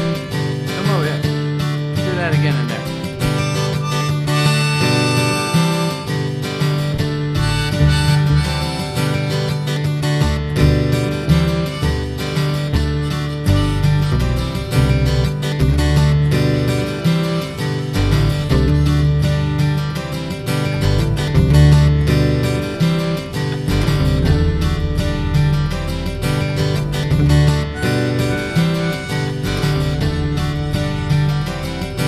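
Acoustic guitar strummed in a steady rhythm, with a D harmonica soloing over it.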